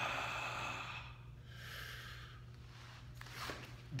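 A man breathing out hard through the pain of a foam-roller calf massage: a long exhale that fades over about a second and a half, then a second, shorter breath near the middle.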